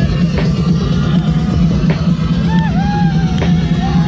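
Loud live rock band playing, with a heavy, steady bass and drum hits about every second and a half. A held melody note bends and sustains through the second half.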